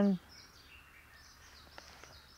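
The tail of a woman's spoken word, then a low outdoor background with faint high chirping of birds in a garden, and a small click near the end.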